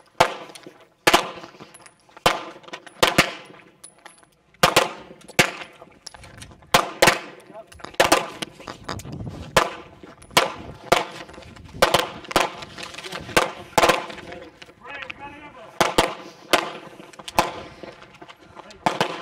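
Gunfire: a string of single gunshots, roughly one a second and unevenly spaced, each with a short fading tail.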